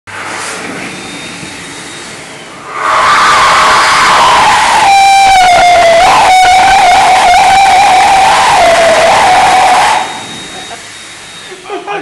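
Electric hand dryer starting up about three seconds in and running loud, with a strong whistling tone from about five seconds in that wavers and dips in pitch. It cuts off abruptly near the ten-second mark.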